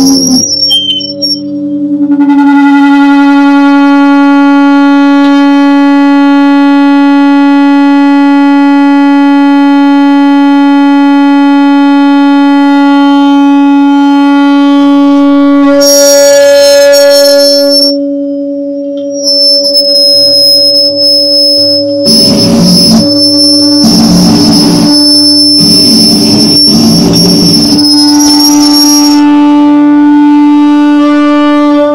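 Loud amplified electric drone from a noise-improvisation guitar-and-electronics rig. A steady pitched tone with many overtones holds for over ten seconds, then shifts higher with a thin wavering high whine above it. Near the end, pulsing low bursts come about every second and a half.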